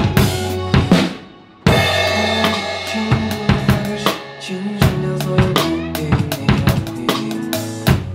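Drum kit played along with backing music: bass drum, snare and cymbal hits in a steady groove. About a second in the playing breaks off briefly and the sound falls away, then comes back with a big hit and a long crash-cymbal wash.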